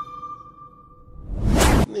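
News-intro logo sting: the ringing tail of an earlier hit fades out, then a loud whoosh sound effect swells for about half a second and cuts off sharply.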